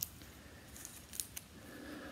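Faint handling noise as a sports card is picked up to show: a sharp click at the start, then a few light ticks about a second in.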